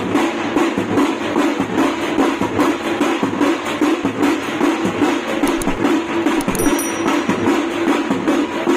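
Drums beating a fast, steady rhythm for street dancing.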